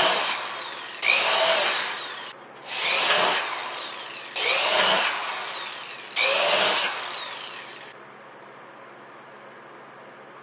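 Corded electric drill boring holes through the thin steel bottom of a tuna can: five short runs of about a second and a half each, each starting loud and fading off, ending about eight seconds in.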